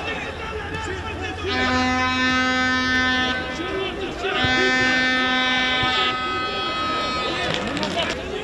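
Two long, steady-pitched blasts of a fan's horn in the stadium, each about two seconds, the second starting a second after the first ends, over crowd voices and stadium noise.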